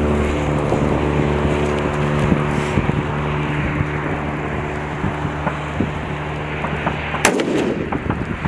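Gunfire on a rifle range: scattered fainter shots over a steady engine hum, then one loud close shot near the end.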